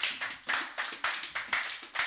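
Congregation clapping together in a steady rhythm, about two claps a second.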